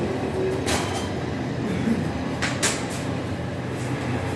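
Steady low machine hum of a working bakery, with a few short sharp clicks or knocks: one about a second in and two close together past the middle.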